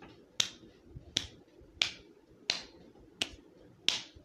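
Open-handed slaps to a person's own face: six sharp smacks, evenly spaced about two-thirds of a second apart.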